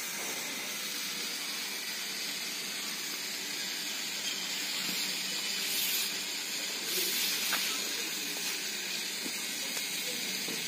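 Steady outdoor background hiss with no clear source, with two brief louder rustles about six and seven seconds in, as a long metal shaft is laid on the ground.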